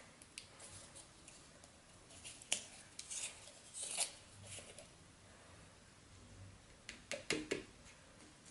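Faint clicks and plastic rubbing from a small squeeze bottle of craft paint as its cap is worked open by hand, with a few sharper clicks near the end.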